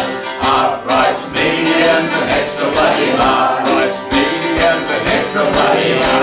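A man and a woman singing together over a strummed archtop acoustic guitar and a mandolin, the closing chorus of a folk song.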